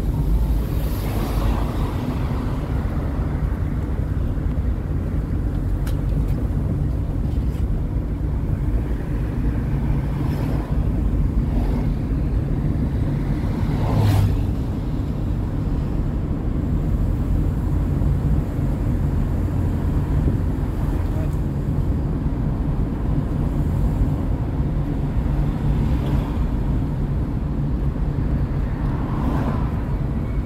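A car driving slowly, with a steady low rumble of engine and road noise. There is one brief thump about halfway through.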